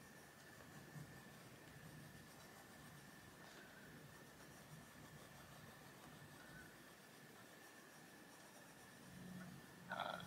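Near silence: faint strokes of a Faber-Castell Polychromos coloured pencil shading on paper, under a faint steady high tone.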